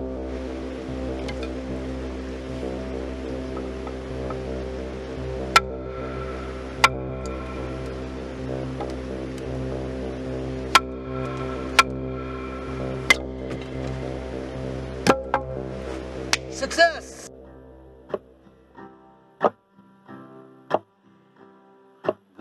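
A hatchet chopping into a lumber board to split off burnable pieces: about nine sharp wooden knocks at irregular intervals. Under them runs steady background music, which fades out near the end and gives way to quieter music with light, even ticks.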